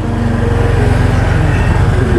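Small motor scooter engine running as the scooter approaches, its low, even pulsing getting louder in the first half-second and then holding steady.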